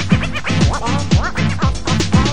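Dance music DJ mix recorded off FM radio onto tape, with turntable scratching: quick rising and falling squeals over a steady beat of deep kick drums that drop in pitch.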